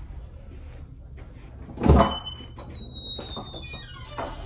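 A fire door closing with one heavy thud about halfway through, followed by a thin metallic ringing that dies away over the next two seconds. The door shuts and latches.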